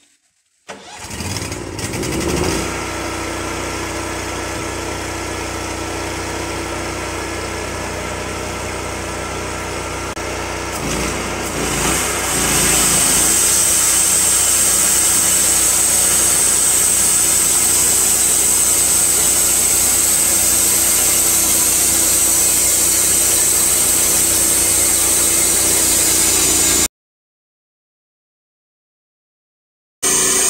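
TimberKing 1220 portable bandsaw mill's engine starting about a second in and running steadily, then throttled up a little after ten seconds in, when it becomes louder with a steady high whine, until the sound cuts off abruptly near the end.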